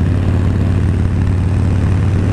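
Harley-Davidson Sportster 1200 Forty-Eight's air-cooled V-twin engine running steadily under way at cruising speed, with wind noise rushing over the microphone.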